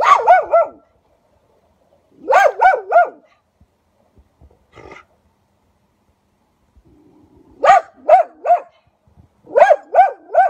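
Red fox barking: short, sharp pitched barks in quick runs of three, repeated four times, with one fainter call about halfway through.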